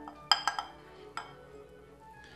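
A few sharp clinks of cookware knocking against a glass measuring jug, each with a brief ring, as the last of the hot chocolate is tipped from the saucepan: three close together early in the second half-second and one more about a second in.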